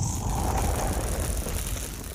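Title-card sound effect: a loud, noisy rush with a low rumble that starts abruptly and fades away near the end.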